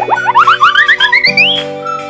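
Children's background music with a cartoon sound effect laid over it: a quick run of short upward swoops that climb in pitch for about a second and a half, then the music's steady tune comes back.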